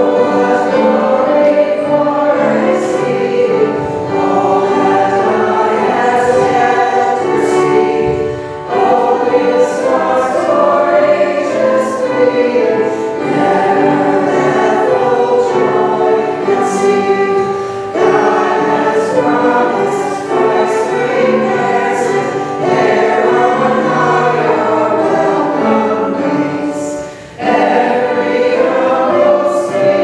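A choir sings a hymn in long sustained phrases, with short breaks between verses or lines. It is the entrance hymn of a Catholic Mass, ending just before the opening sign of the cross.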